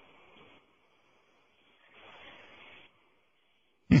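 Faint hiss from a phone recording played down a telephone line, in two short stretches, the second about a second long; the line drops to silence between them.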